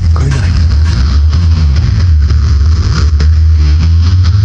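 Loud live psychedelic electronic music: a sustained low bass drone under a noisy, rumbling wash, with a fast buzzing pulse coming in near the end.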